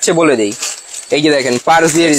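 A man talking in Bengali, with a light metallic jangle of loose steel blender blades handled in a plastic bag.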